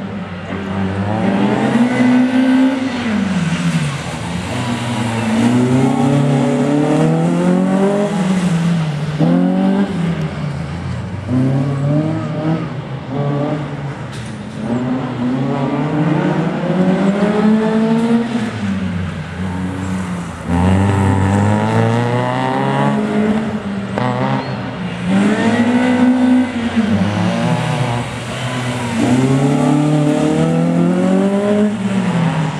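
Peugeot 106 hatchback engines revving hard and easing off over and over through slalom turns. The pitch climbs and drops every two or three seconds, with sharper falls where the driver lifts or changes gear.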